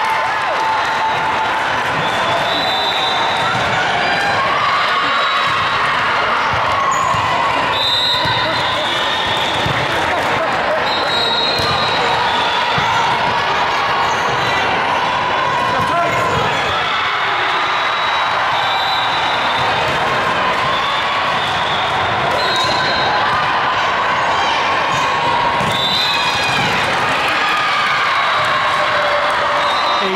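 Busy gymnasium din at a volleyball tournament: volleyballs thudding on hands and the hardwood floor, mixed with many overlapping voices of players and spectators and short high squeaks now and then, all echoing in the large hall.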